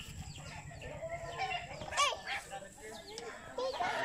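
Chickens clucking faintly, with a short, sharper call about two seconds in.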